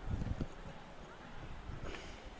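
Faint pitch-side ambience of a football match: a low rumble, with a few soft low thumps in the first half-second.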